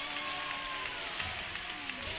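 Audience applause, a dense patter of clapping, with a few voices holding notes or calling over it.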